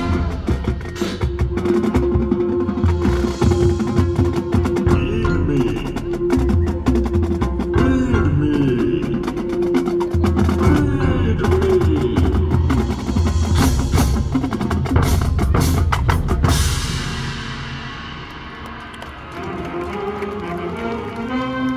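High school marching band playing its field show, led by the drumline and front-ensemble percussion, with a sustained note held underneath for much of the passage. The music fades down near the end, then swells back in.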